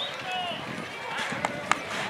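Indistinct background voices of people talking, with two sharp clicks about one and a half seconds in.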